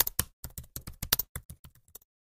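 Computer keyboard typing sound effect: a rapid, uneven run of key clicks, about seven or eight a second, stopping at the end.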